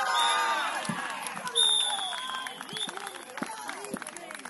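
Several voices shouting at once across an outdoor football pitch, players and touchline spectators calling out during play.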